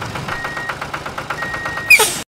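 Tractor engine sound effect chugging steadily at about ten beats a second. A brief, loud, sharp high sound comes just at the end.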